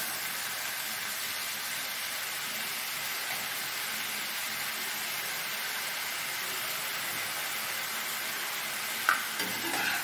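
Sliced mushrooms frying in oil in a nonstick wok, a steady sizzling hiss as they are stirred with a spatula. A single sharp knock comes near the end.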